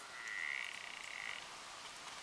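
Water buffalo calling: one faint, high, steady note lasting just over a second, which almost sounds like an elk.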